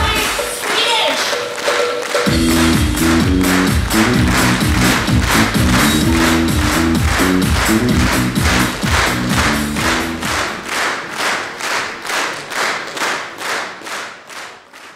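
Audience clapping in unison, about two claps a second, over loud music with a bass line. The music stops about ten seconds in, and the rhythmic clapping carries on alone, fading away at the end.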